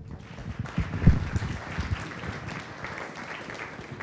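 An audience in a lecture hall applauding with a steady patter of clapping.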